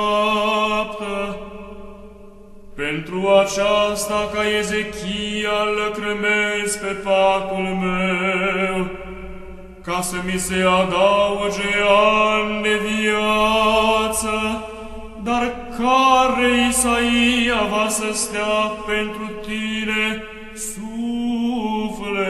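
Orthodox Byzantine-style chant: a voice sings a slow, ornamented melodic line over a steady held drone note (ison), breaking briefly between phrases.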